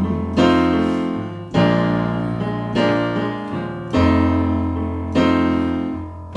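Digital piano playing a slow blues passage with no singing: chords struck at an even pace, about once every second and a quarter, each ringing and fading over held bass notes.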